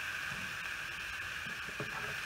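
Ground beef frying in its own fat in a nonstick pan: a steady sizzling hiss.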